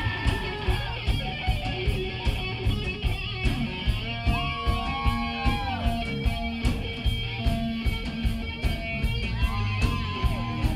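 A live rock band playing: electric guitar over drums keeping a steady beat of about two hits a second, with long, bending held notes around the middle.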